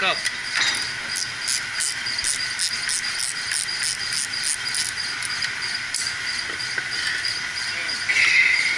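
Steady hiss of running pump-room equipment. From about one to five seconds in, a run of quick, light, evenly spaced clicks at roughly three a second comes from hand work on the pump casing.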